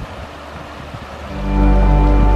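Rushing water of a rocky mountain stream, then background music with sustained chords and a deep bass swelling in over it about two-thirds of the way through and becoming the loudest sound.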